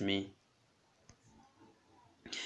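A voice speaking in Kirundi trails off a fraction of a second in, then near silence with a faint click or two.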